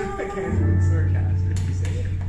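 Closing chord of a live piano and acoustic guitar duet, with a low note held from about half a second in as the singing ends.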